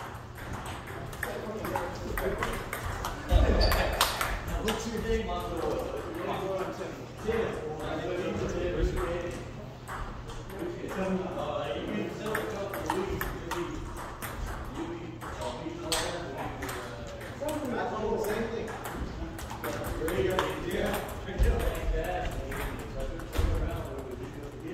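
Table tennis rally: a ping-pong ball clicking repeatedly off paddles and the tabletop, with a few heavier thuds about three and a half seconds in and near the end.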